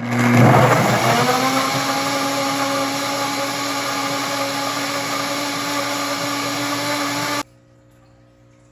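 Nutribullet countertop blender starting up on whole strawberries: a rough chopping clatter for about the first second as the fruit is broken up, while the motor's pitch rises and settles. It then runs with a steady whine as the fruit turns to a smooth purée, and cuts off suddenly near the end.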